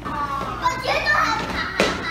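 Several children talking and calling out over one another in high, excited voices. A single sharp click comes near the end.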